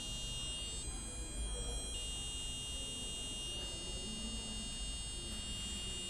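A micro:bit playing a steady, thin, buzzy electronic tone from its tilt-controlled stabiliser program. The tone switches pitch twice as the board is tilted: it drops slightly about a second in and jumps higher about two seconds in.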